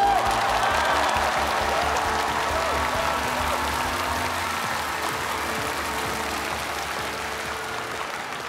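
Studio audience applauding and cheering over closing music, a few shouts standing out at the start; the whole sound fades down gradually.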